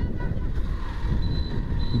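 A motorcycle in motion on a road: a steady low rumble of engine and wind on the microphone.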